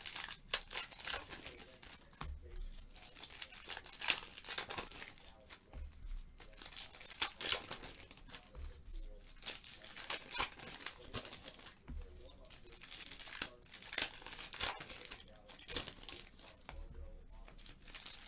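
Foil trading-card packs being torn open and crinkled by hand, a steady run of sharp ripping and crackling with sharper snaps every second or two.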